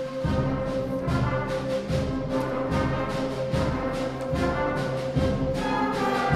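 Middle-school concert band playing, brass and flutes over a held note. Low, even pulses come in just after the start and repeat about once a second.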